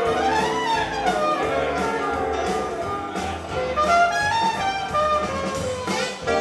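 Live country band in an instrumental break: saxophone and trumpet play a horn line over a bass line and a steady drum beat, with no singing.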